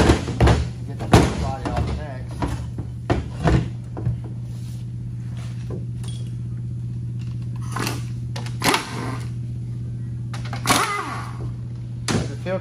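A 6L90E automatic transmission's aluminium case being turned over on a steel workbench: a run of metal knocks and clunks, most of them in the first few seconds and a few more near the end, over a steady low hum.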